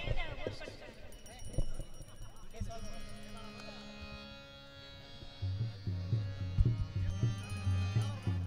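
A harmonium sounds a sustained chord from about three seconds in, over tabla strokes. Past the middle, deep ringing bass strokes on the tabla's larger drum grow loud and become the loudest sound.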